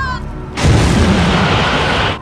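A loud rushing blast of noise with a deep rumble underneath. It starts about half a second in, holds steady for about a second and a half, then cuts off sharply near the end: a dramatic boom-like sound effect.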